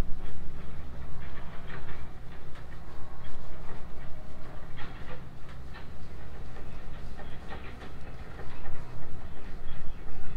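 A paintbrush scrubbing and dabbing clear acrylic emulsion onto rough stone wall cladding, in irregular short scratchy strokes, over a steady low rumble.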